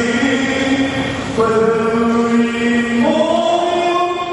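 Many voices singing together in slow, long held notes, typical of a congregation's hymn or chant, stepping to a new pitch about one and a half seconds in and again near three seconds.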